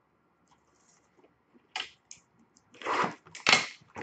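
Plastic shrink-wrap on a hockey card box being handled and torn, crinkling in a few short crackling bursts that start about two seconds in.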